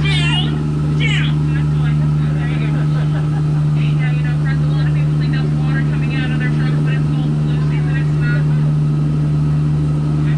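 Ride boat's motor running with a steady low hum as the boat moves along. Short high warbling, chirping calls sound over it now and then, the clearest about four and six seconds in.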